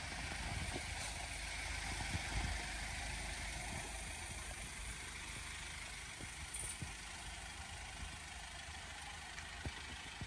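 Mercedes-Benz Sprinter van's engine running steadily at idle or low speed, faint.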